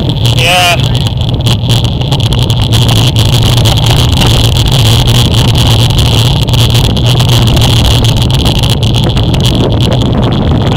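Steady, loud rush of wind on a bike-mounted camera's microphone, mixed with road noise from the bicycle rolling at speed on wet asphalt. A brief rising squeal comes about half a second in.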